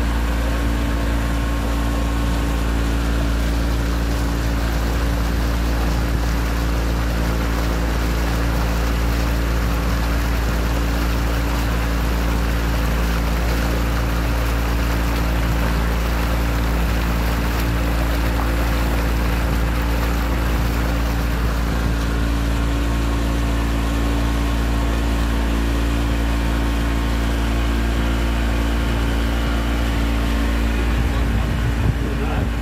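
Motorboat engine running steadily under way: a constant low drone made of several steady tones, over a rush of water along the hull.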